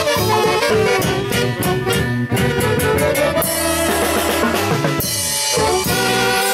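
Live huaylas band: several saxophones playing the melody together over a drum kit with timbales, cymbals and electric bass. A run of drum strikes comes about two to three seconds in, and the low end briefly drops out near the end before the band comes back in full.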